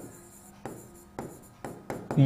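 A pen writing on a board: about five short, faint strokes as a word is written by hand.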